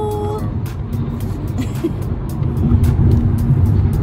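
Steady low rumble of road and engine noise inside a moving car's cabin, under background music with a regular light beat.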